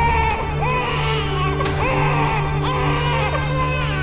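An infant crying in repeated wavering wails over background music with a steady low drone.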